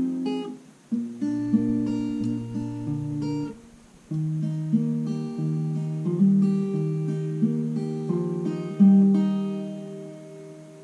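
Acoustic guitar fingerpicked one note at a time in a repeating arpeggio pattern, with brief breaks about one second and four seconds in; the last notes ring out and fade near the end.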